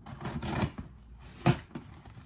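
Scissors cutting into plastic packaging on a cardboard box: a crinkling rustle through the first half second or so, then one sharp click about a second and a half in.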